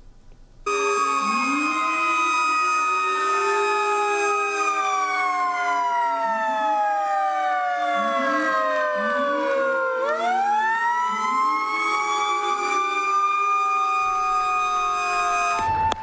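Fire truck siren sounding in salute while parked. Its pitch holds, slowly falls, then sweeps sharply back up about ten seconds in. Short, lower rising tones repeat several times underneath.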